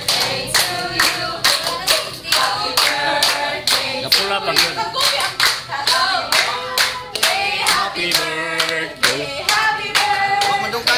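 Hands clapping in a steady rhythm, about two to three claps a second, along with a group of people singing.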